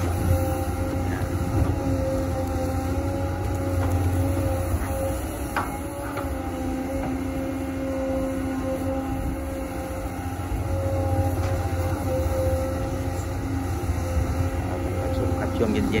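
XCMG XE215C hydraulic excavator working as it digs and swings a bucket of wet clay. Its engine and hydraulics make a steady drone with a constant higher hum, the load rising and easing slowly as the arm works.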